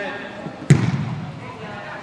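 A soccer ball kicked once, a sharp thump about two-thirds of a second in that echoes around the indoor hall, with voices from players and spectators around it.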